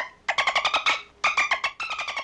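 Dolphin chattering: three bursts of rapid, squeaky pulsed calls in quick succession. This is the chattering, laughing noise dolphins make when play fighting.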